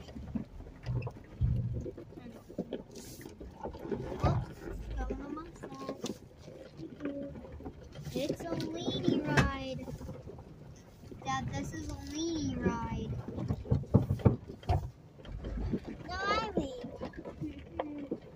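Jeep Wrangler's V6 engine running at low revs as the Jeep crawls over a rough, rutted trail, heard from inside the cabin, with intermittent low rumble and scattered knocks and creaks from the body and suspension.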